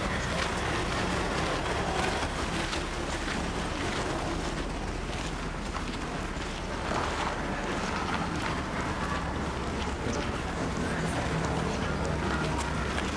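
Wind rumbling on the camera microphone over steady outdoor street noise, while a small car drives past and away up the dirt road.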